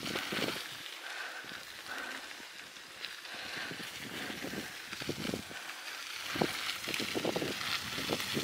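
Bicycle riding along a forest path: a steady rolling and wind noise with irregular soft bumps.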